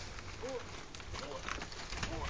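A dog playing tug-of-war with a rope, making short repeated growling grunts, with scuffling and rustling of paws on dry leaves and gravel.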